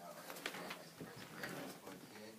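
Faint, indistinct voices murmuring off-mic in a small room.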